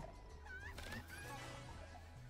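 Esqueleto Explosivo 2 slot game's background music, a low bass line in steady notes, with short high gliding sound effects about half a second in.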